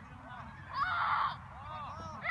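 Distant voices calling across an open sports field, with one louder shout about a second in.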